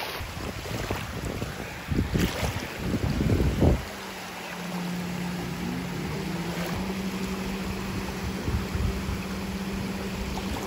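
Wind buffeting the microphone over gentle surf, loudest in gusts in the first four seconds, then a steady low engine drone from about four seconds in that dips briefly in pitch and holds on.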